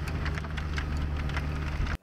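Tractor engine running steadily as a Bunning muck spreader's two spinning rear rotors fling muck out across the field, with a scattered pattering of clods. The sound cuts off suddenly near the end.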